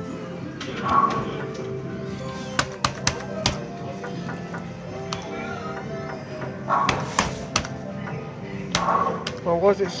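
A Nudger Deluxe fruit machine being played through several quick spins: each spin starts with a short electronic jingle and ends in a cluster of sharp clicks as the reels stop. Steady electronic music plays throughout.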